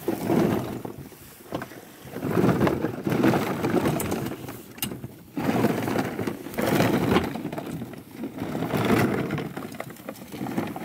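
Plastic duck decoys rustling and knocking together as they are handled on their cords, in several rough swells of a second or more each.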